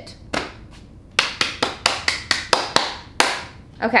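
A person clapping their hands quickly, about eight sharp claps in a row at roughly five a second.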